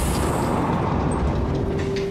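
A loud, steady low rumble with a rushing hiss on the film's soundtrack, with no speech. A single held tone joins it about one and a half seconds in.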